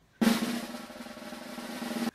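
Snare drum roll sound effect, a suspense roll: it starts sharply, eases off, then swells again before cutting off.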